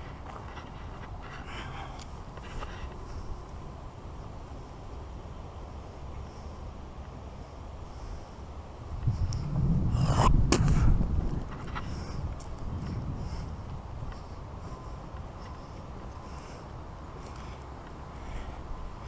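Low wind rumble on the microphone of a walking, body-worn camera. It swells into a louder gust for a couple of seconds about halfway through, with a few sharp clicks.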